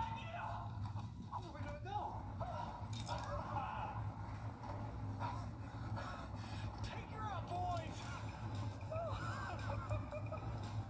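Faint voices talking in bits and pieces, over a steady low hum.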